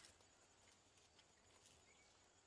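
Near silence: a faint steady hiss with a few soft ticks.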